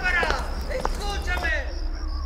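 A person's voice making drawn-out sounds that fall in pitch, twice, with a couple of sharp clicks, over a steady high-pitched whine and a low hum.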